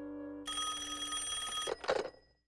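Telephone bell ringing, starting about half a second in and lasting about a second, with a short noisy burst just after it near the end. Before the ring, a held music chord fades out.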